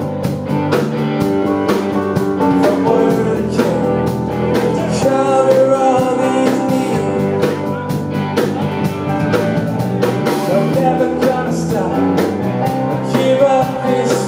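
Live rock band playing a song with a steady drum beat, loud and continuous.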